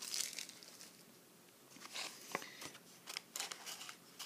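Paper leaflet and plastic snack-bag packaging crinkling as they are handled, in three short bursts: at the start, about two seconds in, and near the end.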